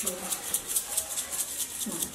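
A small plastic shaker bottle of seasoning powder shaken hard and quickly, the granules rattling inside at about five shakes a second.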